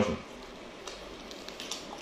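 Faint mouth sounds of a person chewing food, with a few small wet clicks about a second in and again near the end.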